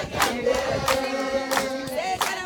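A group of women singing together in unison, holding long notes, with hand claps keeping a steady beat of about three claps a second.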